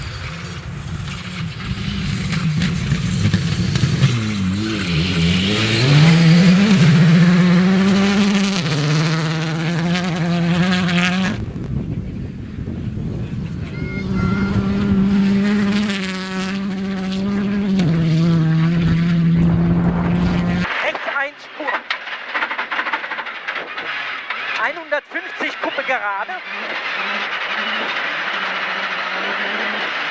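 Skoda Fabia R5 rally car driven hard on gravel: its turbocharged four-cylinder engine revs up and down through quick gear changes as it passes. The sound cuts abruptly twice. About two-thirds of the way through it changes to a thinner engine noise without the deep rumble.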